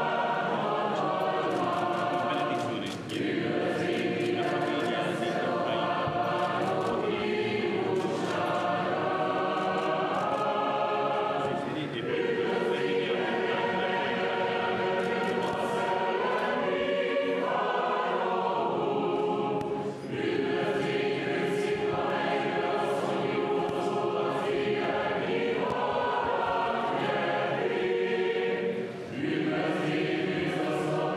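Greek-Catholic church choir singing unaccompanied Byzantine-rite liturgical chant in long phrases, with short breaths between them about 3, 12, 20 and 29 seconds in.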